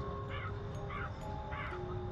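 Birds calling over and over, a short call about every half second, over faint steady held tones.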